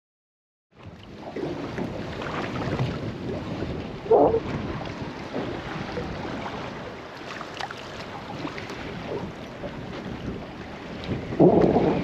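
Wind buffeting the microphone over choppy sea, with water washing against a small boat's hull, starting about a second in. Two louder short bursts stand out, one about four seconds in and one near the end.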